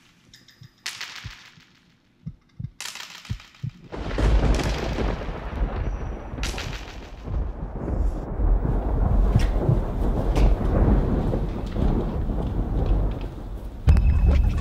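Rumbling thunder: a deep, loud rumble sets in about four seconds in and carries on, after a few short hisses and soft thuds.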